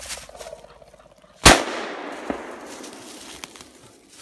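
A single shotgun shot about a second and a half in, with a long echoing tail as it dies away. A much fainter knock follows about a second later.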